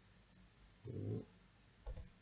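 A short, low voiced sound like a man's murmured 'mm' about a second in, then a single sharp computer-keyboard key click near the end.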